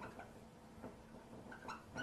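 Dry-erase marker squeaking faintly on a whiteboard in a few short strokes as small circles are drawn.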